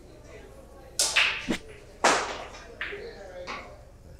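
Pool cue striking the cue ball on a kick shot, followed by hard clicks of billiard balls and cushion knocks: a loud crack about a second in, a second loud crack about two seconds in, then a few lighter knocks.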